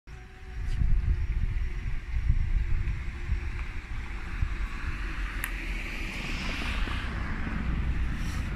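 Wind buffeting the microphone, an uneven low rumble that rises and falls in gusts, with a light hiss swelling near the end.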